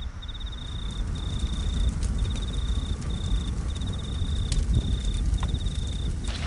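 A cricket chirping in repeated high-pitched trills, each under a second long with short gaps between, over a steady low rumble.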